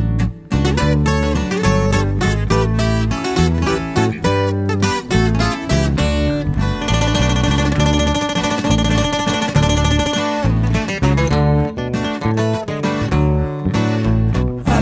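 Instrumental corrido music: a fast picked acoustic guitar lead over a steady bass line. For a few seconds in the middle, held notes ring out instead of the quick picking.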